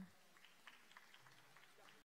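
Near silence with faint, scattered claps from a few people in the audience.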